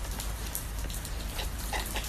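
Steady crackly hiss of background noise with a low hum underneath.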